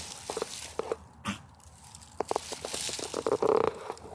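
Dry leaf litter crackling and rustling in scattered short clicks, with a louder rustle near the end.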